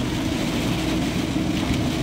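Steady low rumble with hiss and a faint hum, continuous and even in level.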